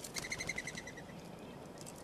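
Mourning dove's wings whistling as it flies in and lands at the nest: a quick run of about ten pulsed whistles in under a second, one per wingbeat, fading out.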